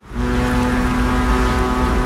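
A ferry's horn giving one long, steady, low blast over a deep rumble, starting suddenly.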